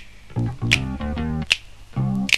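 Instrumental passage of a Thai pop song dubbed from a vinyl record: bass guitar and guitar notes under a sharp, clap-like snare hit about every 0.8 seconds on the backbeat.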